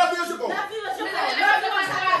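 Several people talking over one another in lively overlapping chatter.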